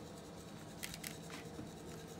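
Faint scraping of a wooden spoon inside a bamboo mortar as ground allspice is tipped out into a bowl, with a few light taps in the second half.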